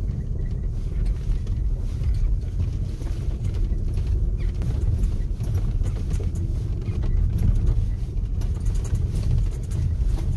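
An off-road vehicle's engine running with a steady low rumble, and light clicks and rattles over it, more of them near the end.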